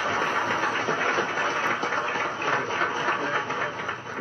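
Audience applause in an old, muffled archival recording: a dense, steady clatter of many hands clapping.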